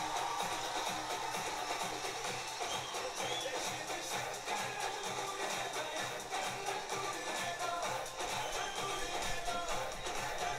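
Upbeat dance song with a steady, driving beat: the soundtrack of an Indian stage dance performance.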